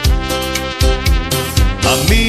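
Instrumental break in a seresta (brega) song: a held, wavering lead melody over a steady drum beat, with no singing.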